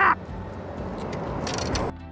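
Steady rush of nearby waterfalls and rapids. Near the end come a few quick slaps and scuffs as a hooked walleye flops on bare rock and is grabbed by hand.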